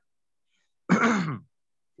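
A man clears his throat once, briefly, about a second in, with silence before and after.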